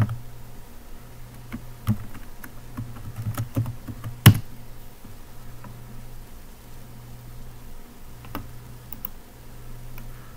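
Computer keyboard keys tapped as a password is typed: a scattering of sharp clicks, one louder click about four seconds in, then only an occasional click.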